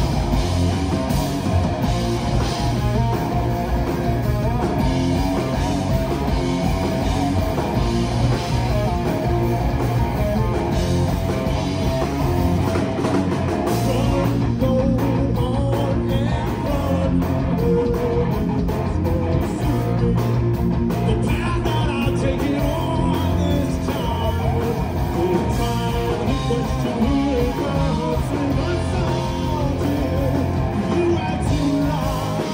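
A rock band playing live: two electric guitars, electric bass and a drum kit, at a steady full level throughout.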